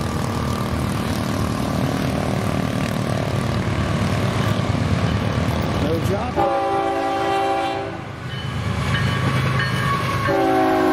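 Florida East Coast freight train's lead GE ES44C4 diesel locomotives approaching with a steady engine rumble. About six seconds in, the locomotive's multi-note air horn sounds one blast of nearly two seconds. A second blast starts right at the end.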